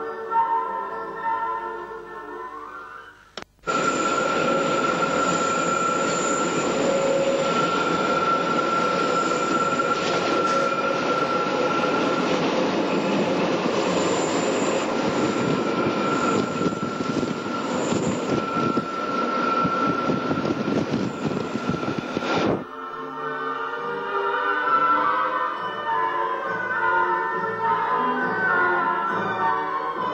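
Background music, then an abrupt cut about three and a half seconds in to an electric railcar running along the track: an even rolling noise with a steady high whine. The railcar is likely one of the Sangritana's Stanga-TIBB units. It cuts off abruptly after about nineteen seconds and music returns.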